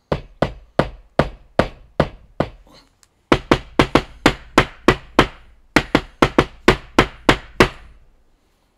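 Ferrum Forge Stinger titanium button-lock folding knife being spine-whacked: a string of sharp knocks, each with a short ring, about eight in the first three seconds, then after a brief pause a faster run of about four a second. The button lock holds through the strikes without closing.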